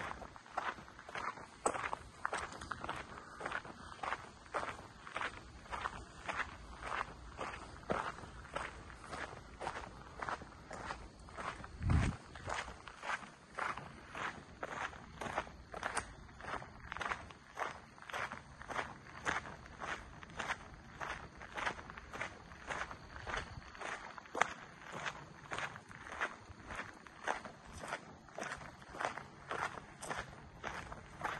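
Footsteps walking at a steady pace on a dirt trail, about two steps a second. About twelve seconds in there is a single low thump, the loudest sound.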